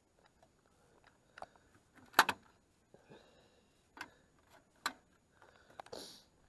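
A few separate sharp clicks and knocks over quiet background, the loudest a little over two seconds in.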